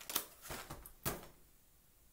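A few quick knocks and rustles from a picture book being handled and set down, all within about the first second.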